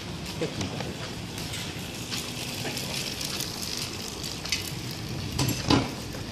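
Crackly rubbing and handling noise from a handheld camera carried while walking on a paved street, with a couple of sharp knocks near the end.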